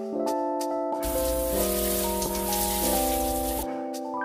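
Gentle keyboard background music plays throughout. About a second in, a rush of spraying water, like a shower running, joins it for over two seconds and then cuts off suddenly.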